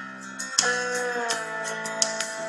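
Instrumental country backing music with no voice: guitar notes ringing out, one held note sliding slightly down about half a second in.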